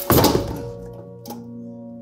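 A heavy thud with a brief scuffle as a man's body falls against a bar stool, over background music of held notes. A lighter knock follows about a second later.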